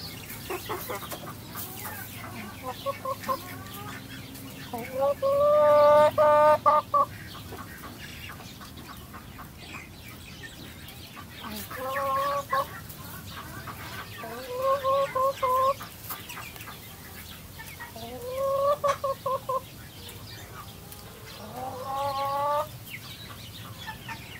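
Chickens calling: five loud, drawn-out calls, each broken into quick pulses and rising at the start, come every few seconds, the loudest about five seconds in, with quieter clucking between them.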